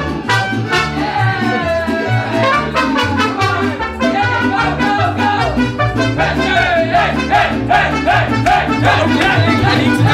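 Mariachi band playing: trumpets over a guitarrón bass line and strummed vihuela, with violin.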